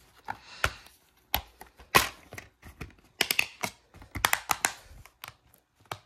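Plastic DVD keep case being handled and opened, with the disc taken off its hub: a string of sharp plastic clicks and snaps, the loudest about two seconds in.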